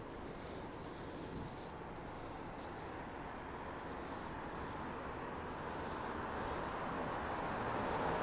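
Steady background noise of a city street at night, with a faint high-pitched chirping that breaks off about two seconds in and comes and goes until about midway.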